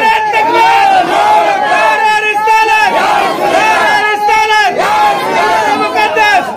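Loud men's voices shouting and chanting over a public-address system, in repeated rising-and-falling calls without a break.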